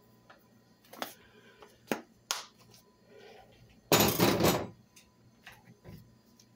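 Plastic spice containers being handled: a few light clicks and knocks, then a short, louder clatter about four seconds in.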